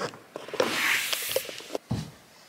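Handling noise as a hand grabs the camera: rustling with a few small clicks, and a short low thump near the end.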